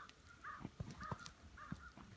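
Four short harsh calls in quick succession, about half a second apart, over soft thumps and rustling as the bear and the man roll about in the snow.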